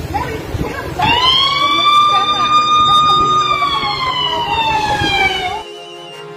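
A single siren wail rises quickly about a second in, holds a steady pitch, then slowly falls away before cutting off near the end, over a background of street noise.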